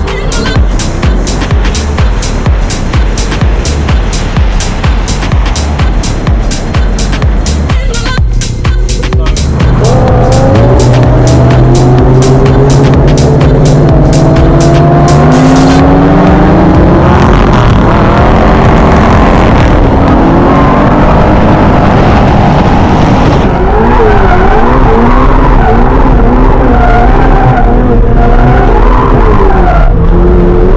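Electronic music with a steady beat of about two beats a second; about a third of the way in, a car engine joins it, rising and falling in revs. The music stops about halfway through, leaving the Ferrari 488 Pista's twin-turbo V8 revving up and down with tyre squeal as it drifts.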